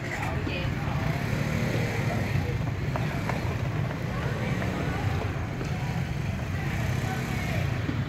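Steady low rumble of street traffic, with indistinct voices mixed in.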